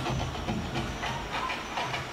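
Crowd noise from a live concert recording: an even, hiss-like din with faint clicks, heard at a moderate level.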